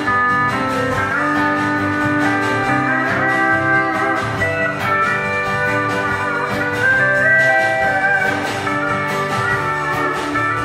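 Zum pedal steel guitar taking an instrumental break in a slow country song: held chords that slide up and down in pitch, with the band's backing underneath.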